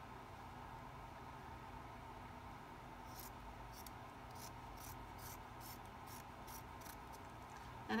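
Faint handling of cotton eyelet fabric: a run of short, crisp swishes about two or three a second, from a few seconds in until near the end.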